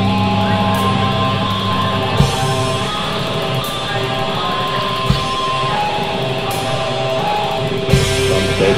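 Heavy metal band's instrumental passage: sustained guitar notes with a slow, heavy drum hit about every three seconds.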